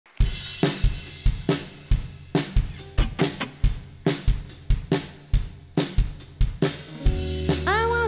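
Drum kit playing a steady beat on its own, kick, snare and hi-hat, as a song intro. About seven seconds in, bass and other pitched instruments join.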